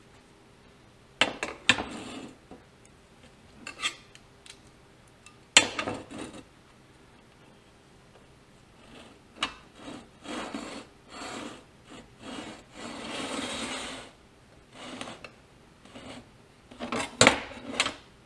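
A steel combination square and scribe worked over a flat steel plate while marking out hole positions: sharp metallic knocks as the square is set down, near the start, about five and a half seconds in and near the end. In between come short scraping strokes, the longest about thirteen seconds in.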